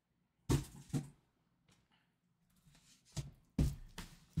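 Shrink-wrapped cardboard boxes set down on a table: a couple of short thumps a little over three seconds in.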